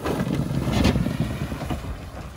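A Ford Focus sedan driving up across a bumpy field, engine and tyres rumbling over rough ground, loudest about a second in as it reaches the camera, then dropping off as it slows.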